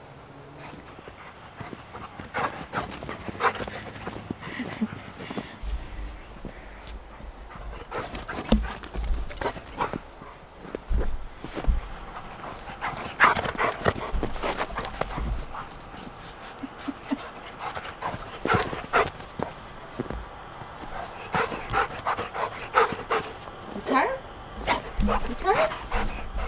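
A golden retriever playing in snow, with irregular crunching steps through the snow. Low rumbles on the microphone begin about five seconds in.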